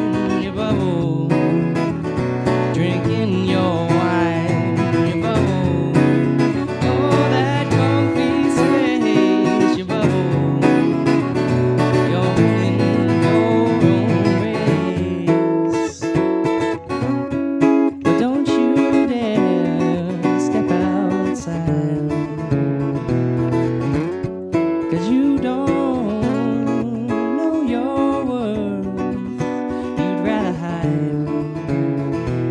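Acoustic guitar strummed steadily while a man sings over it, with a couple of brief breaks in the strumming about halfway through.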